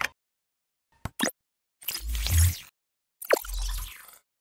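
Animated-logo sound effects: a pair of short clicks about a second in, then two noisy swells with a low thump, the last opening with a quick falling pop. Dead silence lies between the sounds.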